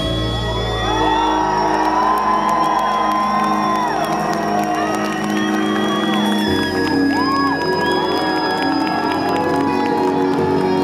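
Live rock band playing electric guitars, bass and keyboard in a hall, a held, ringing passage after the drums drop out, with the chords changing about six and a half seconds in. Crowd whoops and cheers rise over the music.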